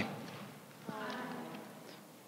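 A group of voices saying "aye" together, faint and distant, starting about a second in with a small knock at its onset.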